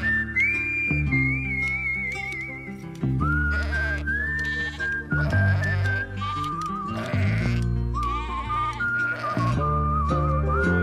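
Background music: a whistled melody with vibrato, over bass notes and chords that change every second or so.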